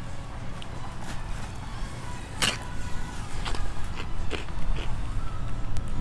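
A crunchy cauliflower pizza crust bitten into, with one sharp crunch about two and a half seconds in, followed by a few softer crunches of chewing over a steady low rumble.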